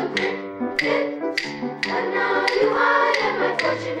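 An intermediate-grade chorus singing with instrumental accompaniment, while a sharp tap marks the beat about twice a second.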